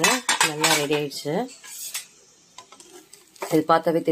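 A spoon scraping and knocking against a dark coated cooking pan as cooked rava upma is stirred. The scrapes and knocks come as a run of sharp clicks in the first two seconds, then it goes quiet.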